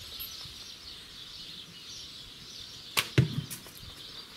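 A traditional bow shot about three seconds in: the sharp snap of the string on release, then a fraction of a second later the arrow's impact at the target, the loudest sound.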